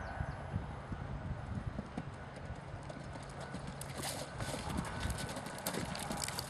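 Muffled hoofbeats of an Irish Draught x Thoroughbred horse cantering on turf, a little louder near the end.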